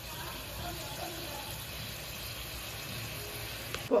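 Sauce boiling in a wok: a steady, low bubbling hiss, with a sharp click near the end.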